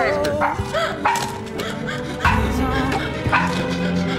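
A small dog barking, mixed over a pop song's music.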